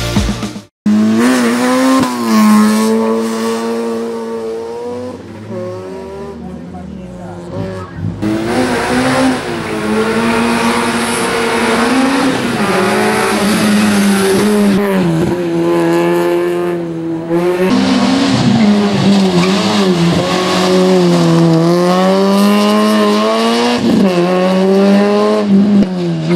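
Peugeot 106 rally car's four-cylinder engine revving hard through a slalom course, its note climbing and dropping again and again as the car accelerates, shifts and slows between the cones. It is fainter for a few seconds early on and louder from about eight seconds in.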